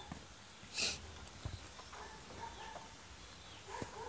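Quiet background with a short burst of hiss about a second in and a few faint, brief animal calls.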